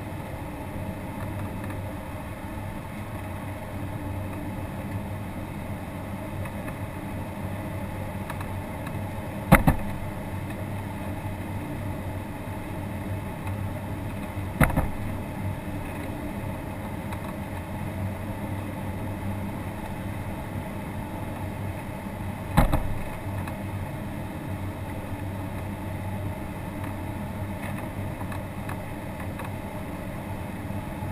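Steady airflow noise in the cockpit of an ASK-21 glider in flight, with a low steady hum underneath. Three sharp knocks break through, about ten, fifteen and twenty-three seconds in.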